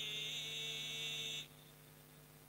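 A man's voice chanting a religious invocation through a microphone and loudspeakers, holding one long note that stops about one and a half seconds in. A steady low hum carries on underneath into the pause.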